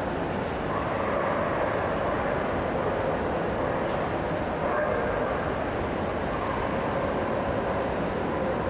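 Steady hubbub of a large indoor show hall: a murmur of voices with dogs barking and yipping in the background.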